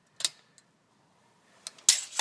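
Steel tape measure clicking: one light click early on, then a near-silent stretch, then sharp clicks and a snap near the end as the blade is taken away and retracts into its case.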